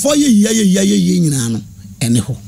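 A man speaking into a studio microphone; his voice drops in pitch and stops about three quarters of the way through, leaving a short pause.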